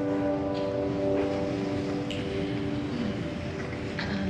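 The last held chord of the church keyboard fading away over about three seconds, over a steady room hum. Faint shuffling and a few small knocks come from the congregation sitting down after the hymn.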